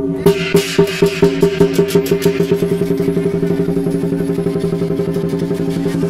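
Lion dance percussion: drum and cymbals beating a steady rhythm of about four strokes a second, starting abruptly, over a steady low drone.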